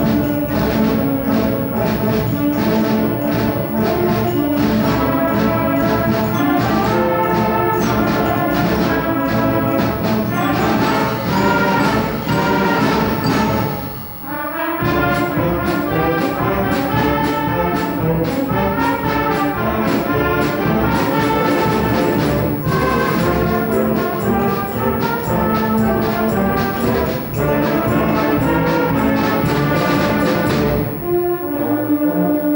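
A seventh-grade concert band of second-year players playing, brass prominent over woodwinds and percussion, with a short pause about fourteen seconds in before the full band comes back in.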